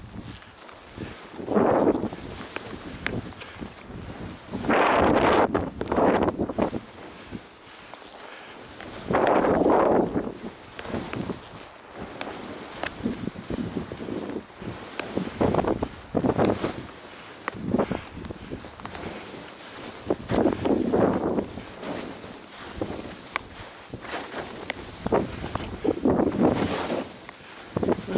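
Skis hissing and scraping through powder snow in a run of turns, a loud swish every few seconds, with wind buffeting the microphone throughout.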